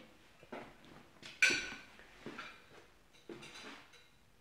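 Dinner plates and cutlery clinking as they are carried and handled: four separate clinks, the loudest about a second and a half in, with a brief ring.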